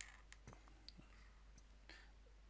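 Faint scratches and clicks of a felt-tip pen drawing short straight lines on paper, over near-silent room tone with a low steady hum.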